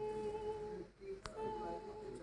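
A voice humming long, steady held notes, one note breaking off before the middle and another taking over, with a single sharp click a little past the middle.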